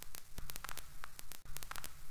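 Crackling static with many irregular sharp clicks over a steady low hum.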